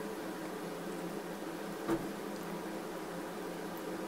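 Steady low room hum with a light hiss, and one brief soft knock about two seconds in.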